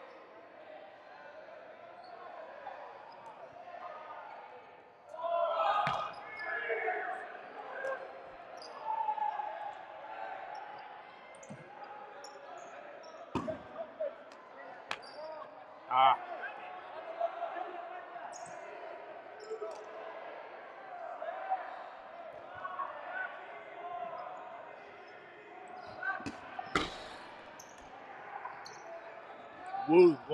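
Dodgeballs slapping and bouncing on a hardwood gym floor in a large echoing hall, with a few sharp impacts, the loudest about halfway through and again at the end. Players' shouts and crowd chatter run underneath.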